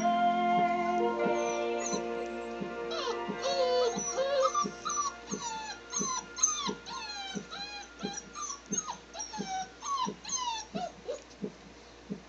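Clumber spaniel puppies whining and whimpering: a rapid run of short, high, falling cries, about two a second, that trails off near the end. Music plays through the first two seconds.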